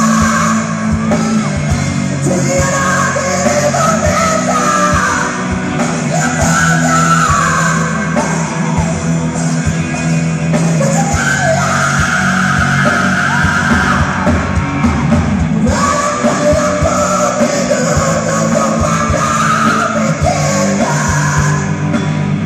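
A live rock band playing loud through a stadium PA, with electric guitars over bass and drums.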